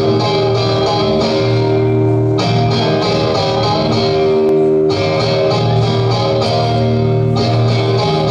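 Electric guitar, a Telecaster-style solid-body, played through an amplifier as sustained strummed chords, the chord changing about every two and a half seconds.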